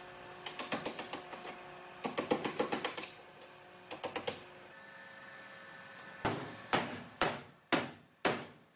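Hammer tapping on a car's sheet-metal body panel, likely against a dolly: quick runs of light taps in the first half. From about six seconds in come single harder blows, about two a second, each ringing out.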